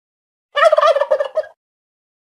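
A turkey gobbling once, a loud warbling call about a second long, starting about half a second in.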